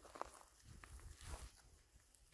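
Near silence, with a few faint footsteps on dry grass about half a second apart.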